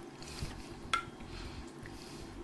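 Gravy being ladled onto a ceramic plate of food, with one sharp clink of the metal ladle against the plate about a second in and a smaller tap before it.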